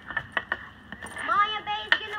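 Street-hockey sticks knocking against a small ball and the asphalt, a few quick sharp clacks in the first half-second, then a child's raised voice near the end.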